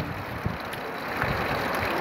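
Steady hiss of heavy rain falling, with low rumbling of wind buffeting the phone's microphone.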